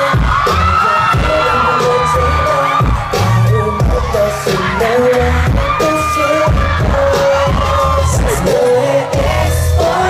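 A K-pop boy group singing a pop song live over a loud, heavy bass beat, heard from among the concert audience.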